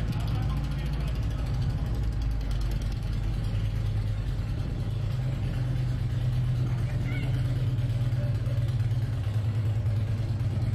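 Steady low drone of a motor vehicle engine running close by on a city street.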